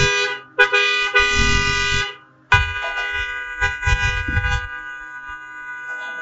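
Car horn honking: a short honk, a second honk of about a second and a half, then a long held honk from about two and a half seconds in, with low rumbling noise under the later two.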